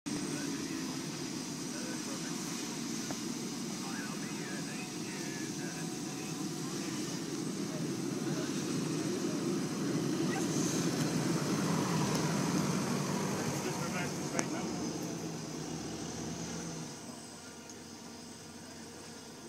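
Engine of a Toyota 4x4 SUV running as it drives up a dirt track, growing louder as it nears and passes about ten seconds in, then dropping away near the end. A single sharp click comes just after it passes.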